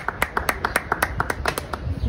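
Rhythmic hand clapping: quick, even claps, about six a second.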